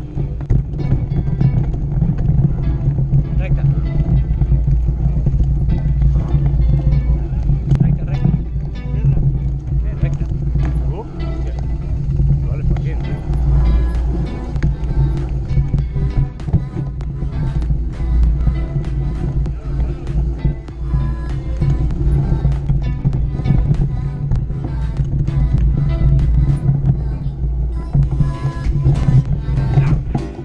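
Background music with a singing voice.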